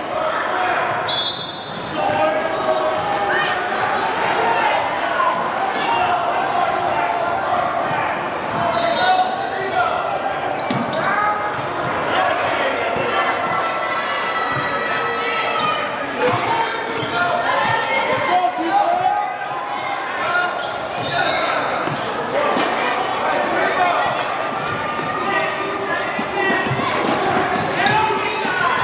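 A basketball dribbling and bouncing on a hardwood gym floor during play, under steady chatter and shouts from players and spectators, echoing in a large hall.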